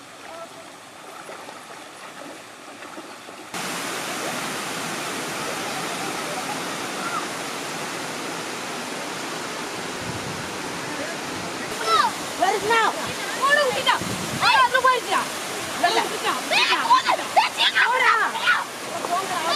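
Water pouring over a low concrete weir in a steady rush, which comes in suddenly a few seconds in after a quieter start.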